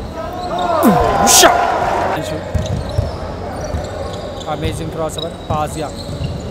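Basketball game play on an indoor wooden court: sneakers squeaking in quick gliding squeals during the first two seconds, with a short sharp burst of noise about a second and a half in as the loudest moment, then the ball thudding on the floor as it is dribbled.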